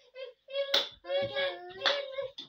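A small child's high voice calling out in drawn-out sounds, broken by two sharp smacks about a second apart.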